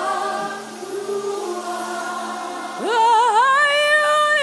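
Gospel worship music sung by a choir: softer held chords, then near the end a lead line slides up into a loud held note with vibrato.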